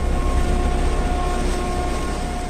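Sustained low rumbling drone with a few held tones over a steady hiss, the closing sound of a logo-animation sting, easing slightly near the end.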